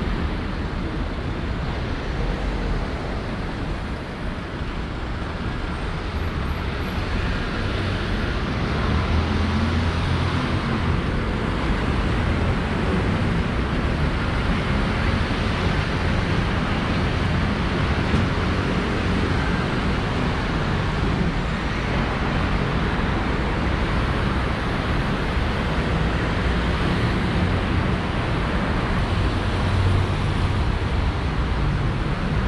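Steady city road traffic at a busy crossing: cars and motorbikes running past, growing a little louder about eight seconds in.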